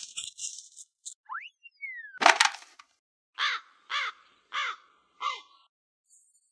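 Comic sound effects: a whistle sliding up and then down, a sharp crash, and then four crow caws about 0.6 s apart.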